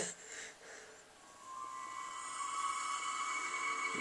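The opening of a film trailer's soundtrack heard playing back through speakers: after a moment of near silence, a soft sustained tone fades in about a second and a half in and holds steady.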